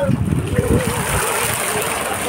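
Water splashing and sloshing as a wet fishing net holding small fish is hauled by hand over the side of a boat, with voices faintly in the background.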